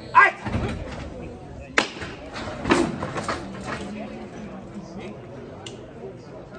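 A man shouts a short, sharp command, followed by a low thud and then two sharp knocks, about two and three seconds in. The knocks come from a wooden float rehearsal frame as the crew under it handle it.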